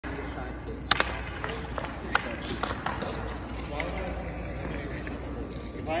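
Ice rink ambience: faint background voices over a steady low hum, with scattered sharp clacks, the loudest two close together about a second in.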